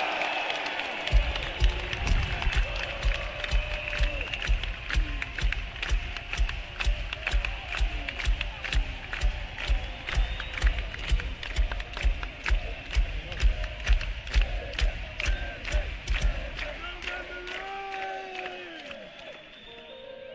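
Arena crowd cheering and clapping over a steady kick-drum beat at about two beats a second; the beat fades out near the end.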